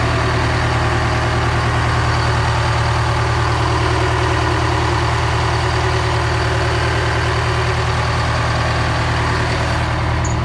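Detroit Diesel 8V71 two-stroke V8 diesel in a GMC RTS bus idling steadily, shortly after a cold start, heard up close at the open rear engine bay.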